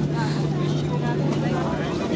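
Boeing 737-800 heard from inside the cabin while taxiing: the CFM56 engines at idle and the cabin air make a steady drone with a constant low hum, with passenger chatter behind it.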